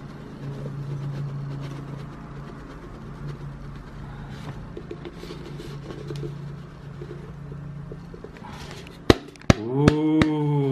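A steady low hum with a faint background hiss, then a few sharp taps near the end.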